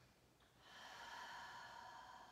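A woman's long, faint breath out, starting about half a second in and held steady as she rests in a knee-to-chest stretch.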